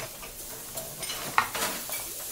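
Kitchen sound effects: food sizzling in a frying pan, with several sharp clinks of utensils against pans over the steady hiss.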